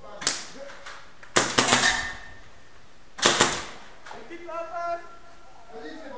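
Airsoft guns firing: a single sharp crack, then a quick string of shots, then a shorter burst of two or three. A person's voice calls out briefly near the end.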